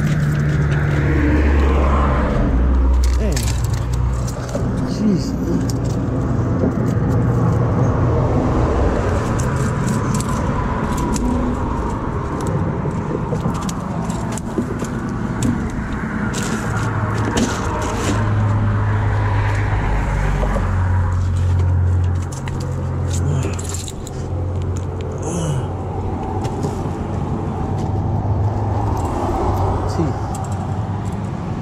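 Road traffic on the bridge: cars and trucks passing one after another, each swelling and fading over a steady low rumble. Occasional short clicks and rattles of close handling.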